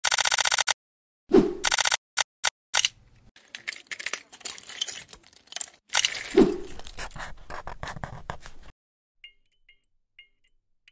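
Plastic Lego bricks clicking, clattering and scraping. It comes in quick runs of clicks, with two heavier knocks, one about a second in and one past the middle. A few faint ticks follow near the end.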